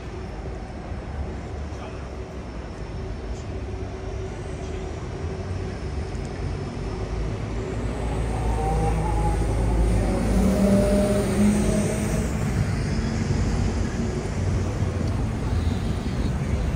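City street traffic: a steady rumble of engines and tyres, with a heavy vehicle such as a double-decker bus getting louder towards the middle and then easing off.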